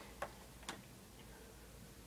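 Two faint sharp clicks about half a second apart, a person handling something small, over a low steady room hum.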